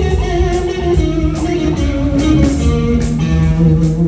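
Live rock band: a distorted lead electric guitar plays held notes that step down in pitch, over bass guitar and drums with cymbal hits keeping a steady beat.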